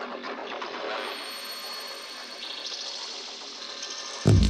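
Electronic dance track in a breakdown with its bass cut out, leaving a thin, hissy, textured passage at a low level. Brighter high sounds step in about two and a half seconds in.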